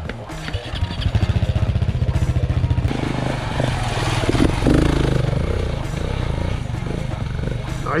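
Off-road motorcycle engine revving hard and pulsing as the bike climbs a dirt trail close by, loudest from about a second in.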